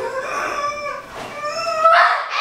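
A girl's high-pitched, drawn-out upset vocalizing, wavering and rising in pitch near the end.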